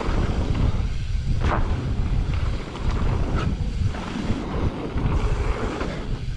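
Wind buffeting the microphone and tyre rumble as a Specialized Turbo Levo e-mountain bike rides fast down a dirt trail, with a couple of sharp knocks and clatter from the bike going over bumps.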